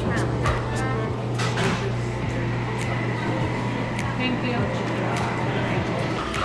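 Restaurant dining-room din: indistinct voices of diners, occasional clinks of cutlery and dishes, and a steady low hum underneath.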